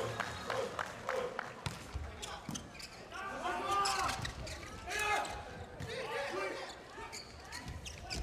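A volleyball bounced repeatedly on the indoor court floor before a serve, then struck in play, the hits echoing in a large hall. Voices call out over the court during the rally.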